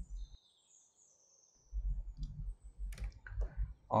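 A few scattered laptop key clicks over a low hum, after about a second of dead silence near the start.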